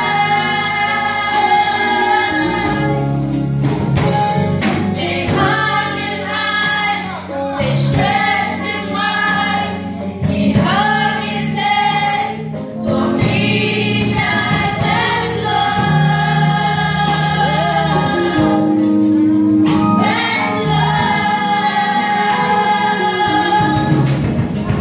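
Youth choir of children and teenagers singing a gospel song together, with long held notes.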